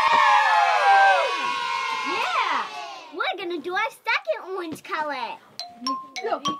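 Several children cheering and shrieking together, their voices overlapping, dying down after about three seconds. Shorter calls and a light chiming music track follow.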